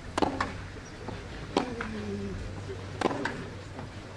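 Tennis rally on a clay court: racket strikes on the ball three times, about one and a half seconds apart, each a sharp hit followed shortly by a fainter knock.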